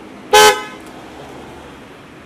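A vehicle horn gives one short, loud toot, over a steady background hum of traffic.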